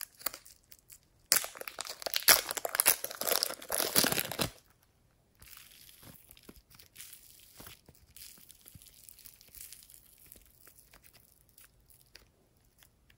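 A thin plastic clay packet crinkling loudly for about three seconds as it is opened and the clay pushed out, then soft, fluffy modelling clay being pulled apart with a quieter, soft tearing rustle.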